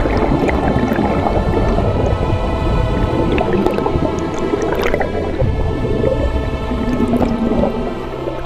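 Background music over loud underwater bubbling and churning water from scuba bubbles streaming past the camera.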